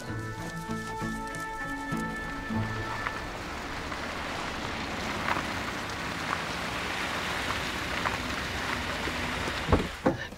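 Background music with held notes for the first few seconds, then a car pulling up on snow, its tyres making a steady hiss that slowly grows. A single sharp thump comes just before the end.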